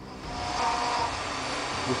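CNC milling machine's spindle and end mill cutting a metal block: a steady whirring hiss with a faint high whine in the first second.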